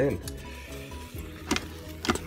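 Wooden spoon stirring shredded cheese into thick mashed potatoes in a stainless steel pot, with one sharp knock about one and a half seconds in. Faint background music plays underneath.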